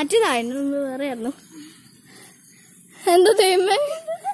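A child's voice: one long held vocal sound lasting about a second, a short quieter gap, then the child vocalising again near the end.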